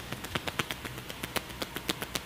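Percussion massage: hands tapping rapidly on a person's arm, on and off in quick light strokes, about seven or eight taps a second.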